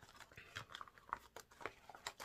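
Faint crinkling and rustling of packaging being handled, a string of short irregular crackles.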